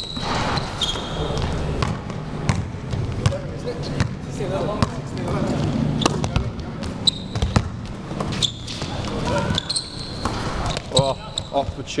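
Basketball game in a gym: a basketball bouncing on the court with sharp knocks and short high sneaker squeaks, amid players' voices in an echoing hall.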